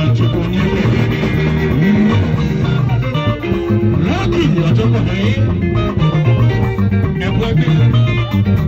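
Live band music led by electric guitar, with gliding guitar notes over a steady low bass line, played loud through PA speakers.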